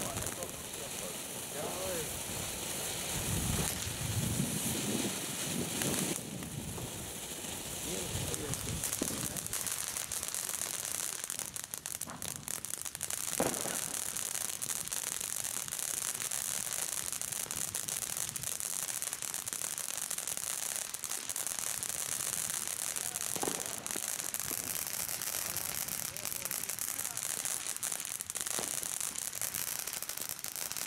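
Ground firework fountains hissing steadily as they spray sparks, with scattered crackles and a couple of sharper pops.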